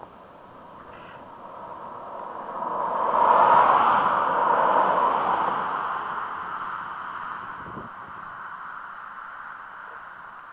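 Two cars driving past on a paved road, their tyre and engine noise swelling to a peak about three to five seconds in and then fading slowly.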